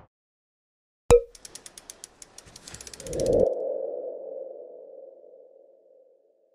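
Logo sting sound effect: a sharp hit about a second in, a rapid run of ticks, then a swelling tone that fades away slowly over the last few seconds.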